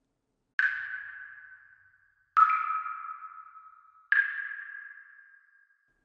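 Water dripping: three single drops, each a sudden ringing plink that fades away over about a second and a half with an echo. The second drop is lower in pitch than the other two.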